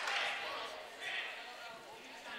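Faint background voices of people in a school gym, with no clear words.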